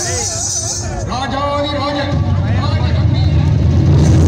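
Loud music played through a large PA loudspeaker stack: a voice sings with a strongly wavering, bending pitch, and heavy bass joins about two seconds in.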